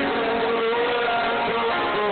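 Live acoustic rock performance: strummed acoustic guitar with a long held note over it, recorded from the crowd with a dull, muffled top end.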